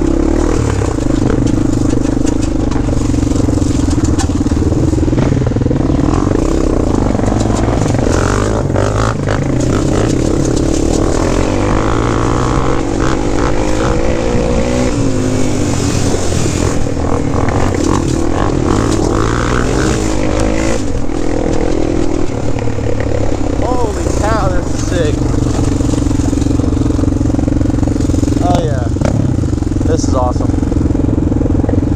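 Honda 400EX quad's single-cylinder four-stroke engine running under way on a dirt trail. It holds a steady note, wavering up and down through the middle as the throttle is worked, then settles again.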